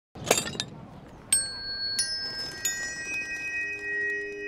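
Two sharp clicks, then tuning forks struck one after another, about a second and a half, two, and two and a half seconds in. Each rings on as a high, steady pure tone, so the tones pile up and overlap.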